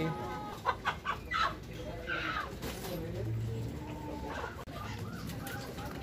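Chickens clucking in wire poultry cages, with a few sharp clicks about a second in.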